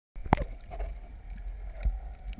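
Underwater rumble of water rushing past a camera being towed behind a boat over a reef, with a sharp knock shortly after the start and a softer thump near the end.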